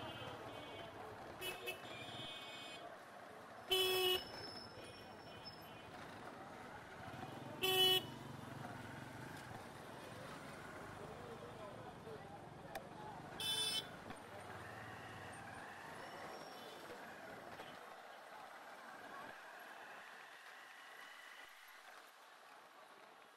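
Busy street traffic heard from a moving motorcycle: a steady low engine hum under street noise, cut by three short, loud horn honks a few seconds apart. The engine hum drops away near the end.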